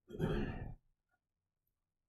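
A man's short sigh near the start, lasting under a second.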